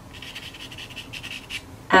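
Pastel pencil scratching across Fisher 400 sanded pastel paper in a quick run of short strokes, drawing an outline.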